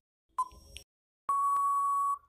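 Quiz countdown timer sound effect: a last short beep-like tick, then about a second later a long steady electronic beep that signals time is up.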